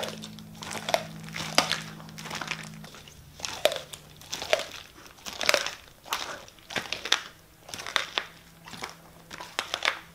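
A plastic dog-food bag crinkling and crackling as a Siberian husky tugs and chews at raw meat lying on it, with sharp crackles coming irregularly about once a second.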